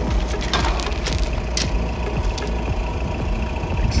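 A steady low rumble, with a few light clicks and knocks of metal cups and a coffee jug being handled on a table.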